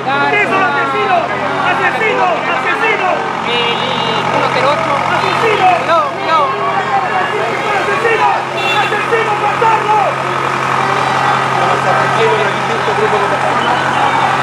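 Many overlapping voices shouting and talking throughout, over the steady low hum of a large vehicle's engine idling.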